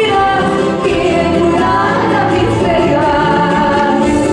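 A woman singing a Bolivian folk song live into a microphone, backed by a band of strummed guitars and charangos with drum.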